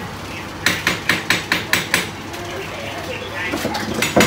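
A quick run of about seven sharp, clicky knocks, roughly five a second. The knocks stop about halfway through and a quieter background is left.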